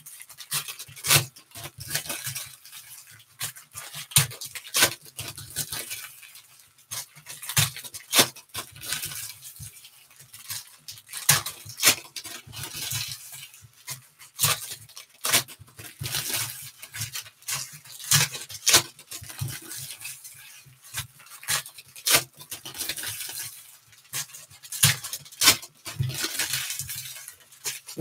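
Foil trading-card pack wrappers being torn open and crinkled by hand, with the cards inside handled and set down. Many sharp, irregular crackles and snaps.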